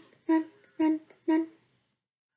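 A boy's voice humming short repeated notes on one steady pitch, about two a second, close to the microphone; three notes, then it stops.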